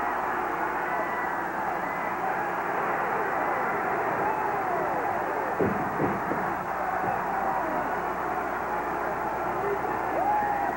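Large arena crowd cheering and shouting, a steady roar with single voices yelling above it and a couple of louder shouts about halfway through.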